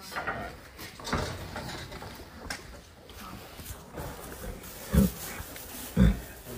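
Movement in a straw-bedded stall around a foaling mare: rustling and shuffling, with two short, low thumps near the end.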